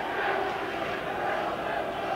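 Steady background noise of a football crowd in a stadium: an even murmur with no single event standing out.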